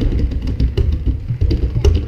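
Hand drumming on large barrel drums with rope-tied heads: a fast, irregular run of deep hand strikes.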